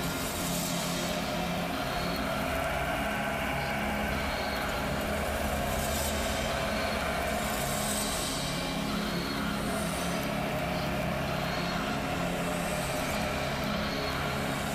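A live metal band playing a slow, droning passage through a festival PA: sustained, distorted guitar chords held as a steady wall of sound, with no clear drumbeat.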